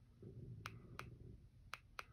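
Button presses on a Sofabaton U1 universal remote: about four short, sharp clicks spread over two seconds, with a faint low rumble under the first two.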